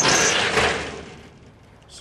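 Steel shed sliding door panel running along its metal track: a rushing scrape that starts suddenly and fades out over about a second.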